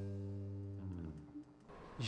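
The band's final chord ringing out and fading away, with guitar, electric bass and keyboard sounding together, then a short downward slide in the low notes about a second in. Near silence follows before the chord has fully died.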